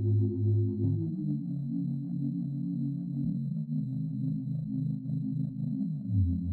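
Instrumental song intro: sustained synthesizer chords that shift pitch twice, over a pulsing low bass that drops out about a second in.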